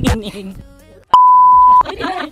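A single steady, pure electronic beep, about two-thirds of a second long, starting just past a second in: a censor bleep laid over a spoken word.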